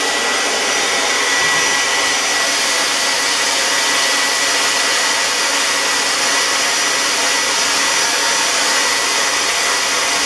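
Hand-held hair dryer running steadily: an even rushing blow with a thin, constant whine, drying fresh airbrushed paint on a fishing lure.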